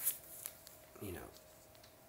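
Rustle and clicks of a cardboard LP record jacket being turned over in the hands, loudest at the very start. There is a brief falling murmur from a man's voice about a second in.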